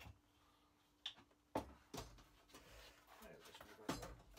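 A few short, sharp knocks and clicks from a glass bottle and a drinking glass being handled on a wooden workbench: a small click about a second in, the loudest knock about a second and a half in, another at two seconds and one more near the end.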